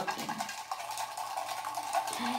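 Faint rustling and small ticks of a folded paper raffle slip being handled and opened.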